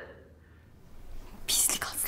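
Speech only: a quiet pause, then a short phrase whispered under the breath about a second and a half in.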